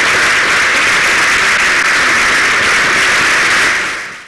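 Audience applauding steadily, a dense patter of many hands clapping, fading out at the very end.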